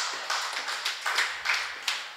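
Scattered audience clapping, a quick irregular patter of claps that fades away.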